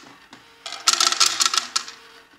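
WoPet automatic pet feeder dispensing dry kibble: a quick run of clicks and rattles, lasting about a second, as pieces drop from the chute into the bowl, over the faint hum of its DC dispensing motor.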